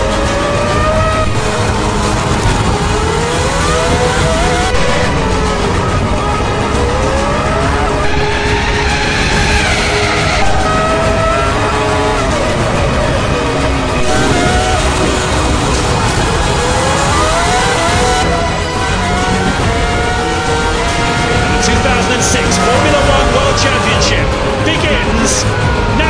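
Onboard sound of a Ferrari Formula One car's engine at racing speed, its pitch climbing again and again as it accelerates and shifts up through the gears, dropping between climbs.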